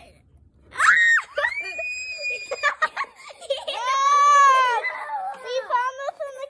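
Children screaming: a sharp shriek about a second in, a long, very high, steady scream, then a lower drawn-out cry, and several quick squeals near the end.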